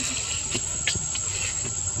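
Insects droning outdoors: one steady high-pitched whine, with a few faint ticks between about half a second and a second in.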